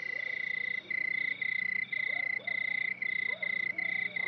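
Night ambience of crickets chirping in even pulses, about two a second, with a few faint frog croaks in the middle.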